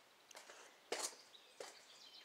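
Three faint footsteps, about half a second to a second apart, with the middle one the loudest.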